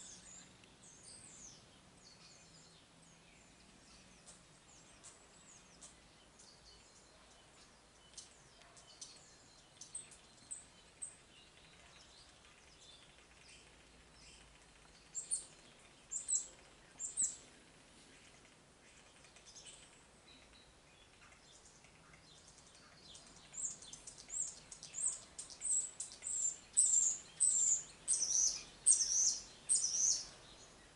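Small birds chirping in short high notes: scattered at first, three clear chirps around the middle, then a quick run of louder chirps over the last few seconds.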